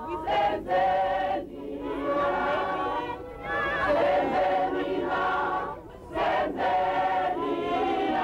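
A crowd of marchers singing together in chorus, the phrases broken by short pauses.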